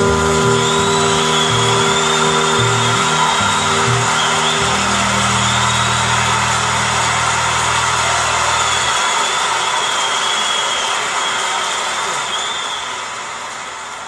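End of a live jazz concert recording: a low held final chord and bass ring out until about two-thirds of the way in, under audience applause that slowly fades out.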